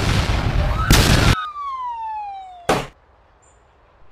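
Cartoon explosion sound effect: a loud blast that swells into a second burst about a second in, then a whistle falling steadily in pitch for nearly two seconds, cut off by a short sharp burst near three seconds.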